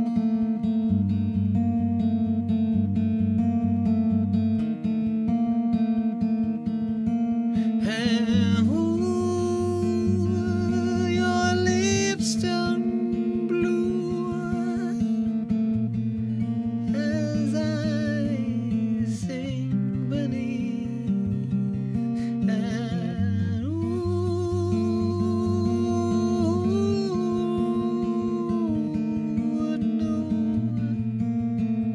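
Acoustic guitar strummed in a steady, repeating pattern. About eight seconds in, a man's voice comes in and sings a melody over it in several phrases.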